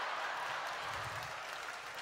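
Audience applauding, a steady even wash of clapping.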